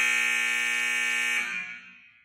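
Gymnasium scoreboard buzzer sounding one long, harsh, steady blast as the game clock reaches zero, signalling time is up. It fades away in the last half second.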